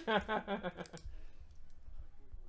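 A man laughs briefly, then light clicks of typing on a computer keyboard.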